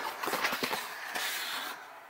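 Cardboard box flaps being pulled open and handled by hand: an uneven run of scraping, rustling and small clicks.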